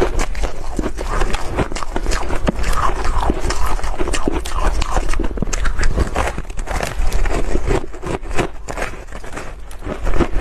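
Refrozen crushed ice being bitten and chewed close to the microphones: a dense, irregular crunching and crackling of granular ice.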